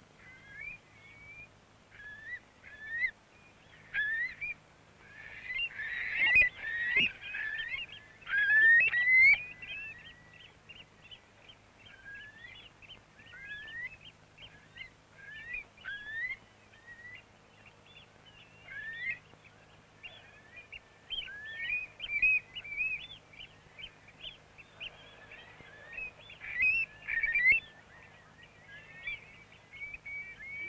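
A flock of wading birds, curlews among them, calling: many short rising whistled calls overlap one another, thickest in a burst about six to nine seconds in and again near the end.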